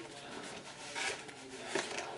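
Paper leaflets and a cardboard box rustling and scraping as printed guides are handled and pulled out of the box. A louder rustle comes about a second in, and a light tap follows near the end.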